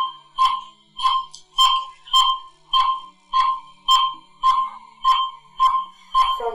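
Hospital patient monitor beeping steadily, a short sharp beep a little under twice a second.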